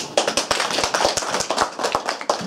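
A small group of people applauding: many quick hand claps that start suddenly and keep up a dense, uneven patter.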